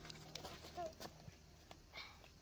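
Faint, sparse clicks and snaps of dry twigs and kindling being handled at a small stick fire, with a short voice-like sound just under a second in.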